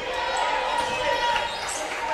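A basketball being dribbled on a wooden gym floor over a steady background of gym noise.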